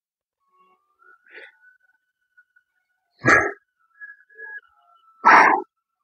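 A man's sharp, forceful exhalations, two huffs about two seconds apart, breathing out on the effort of each weighted crunch. A faint thin steady tone sounds in the background between them.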